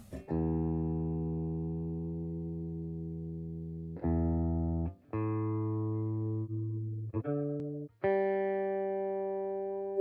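Electric guitar plucked one string at a time through the Zoom G3Xn's built-in tuner in bypass mode, being tuned: about six single notes, each left to ring and fade. The first, low note rings for nearly four seconds, and the later notes are shorter and higher.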